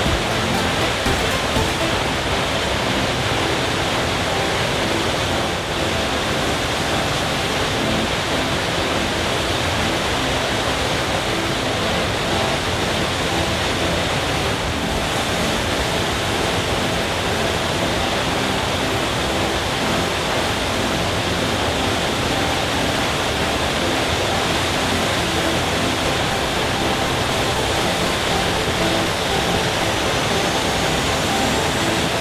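Waterfall rushing steadily: a constant, even noise of falling water.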